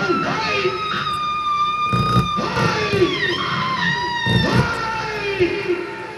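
A woman screaming in long, high cries that slide down in pitch toward the middle, with two dull thuds about two seconds and four seconds in.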